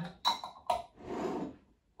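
Metal screw-top lids knocking against glass jam jars: two sharp clinks, the first with a short ring, then a brief scrape as a lid is tried on a jar's thread.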